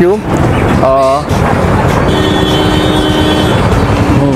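Loud, steady engine-like rumble that flutters rapidly. A brief voice cuts in about a second in, and a steady held tone with several pitches sounds through the middle.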